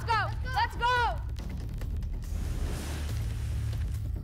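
A child's high-pitched excited squeals for about a second, then a steady hiss over a low hum.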